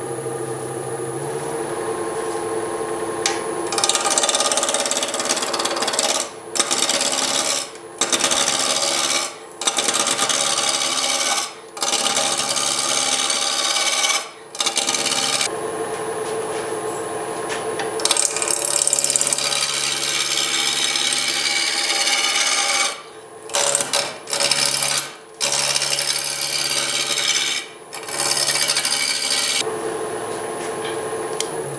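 Wood lathe running with a steady hum while a spindle roughing gouge cuts a spinning apple-wood blank, roughing it down to round. The cutting is a loud, coarse rasping that starts a few seconds in and comes in passes of a few seconds each, broken by short pauses as the tool comes off the wood.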